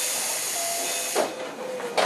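A sudden hiss of compressed air from a Keio 7000-series train car, lasting a little over a second before dying down. A sharp click follows near the end.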